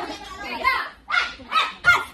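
People's voices in a large room: talk, then two short, loud, shrill shouts, one about a second in and a louder one near the end.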